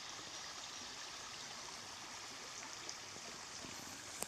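A small mountain stream flowing, a steady, even rush of water.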